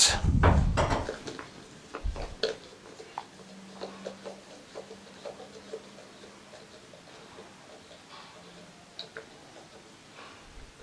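Metal hand tools clanking near the start, then faint small clicks and scrapes as the pump's diaphragm cap nut is unscrewed by hand.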